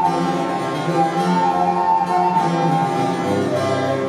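Baroque chamber ensemble playing: a baroque transverse flute (traverso) holds a melody over harpsichord and viola da gamba continuo.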